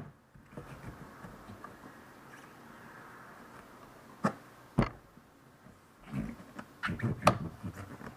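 Neoprene band saw tire, softened in hot water, being stretched by hand onto a metal band saw wheel: faint rubbing, two sharp knocks about four and five seconds in, then a run of short squeaky sounds near the end.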